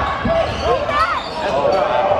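Live basketball play on a hardwood gym court: the ball bouncing with low thuds in the first second, amid players' and spectators' voices in the large, echoing hall.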